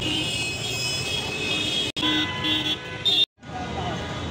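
Busy street traffic noise with a vehicle horn tooting three short times in the second half.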